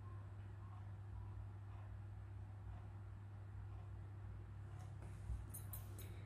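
Quiet room tone with a steady low hum. Near the end come a few faint clicks and rustles as the paintbrush is handled and brought to the paper palette.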